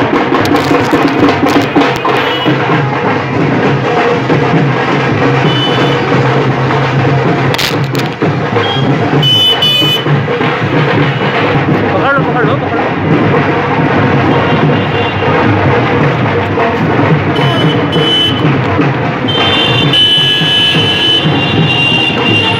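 Loud wedding procession (baraat) music with drums, mixed with the voices of the crowd.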